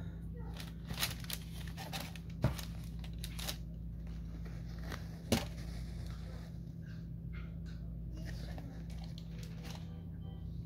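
Close-up handling noise of a suede sneaker being turned and squeezed in the hands: fabric rubbing and crinkling, with a few sharp clicks, the loudest about two and a half and five seconds in. A steady low hum runs underneath.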